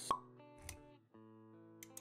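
Intro music with sustained notes and sound effects: a sharp pop just after the start and a low thud about a third of a second later. The music drops out briefly around the middle, then resumes.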